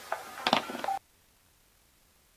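A few short electronic beeps and clicks from a spelling-toy prototype demo playing back, then the sound cuts off abruptly about halfway through to dead silence.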